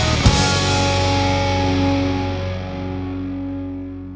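Closing chord of a heavy metal song. A last hit just after the start, then the guitars ring out and fade away.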